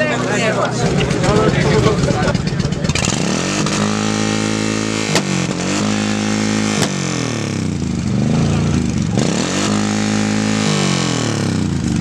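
Cruiser motorcycle engine revved hard through the exhaust several times, its pitch climbing and dropping with each blip. Two sharp pops, exhaust backfire shots, come at about five and seven seconds in. Crowd voices are heard in the first few seconds.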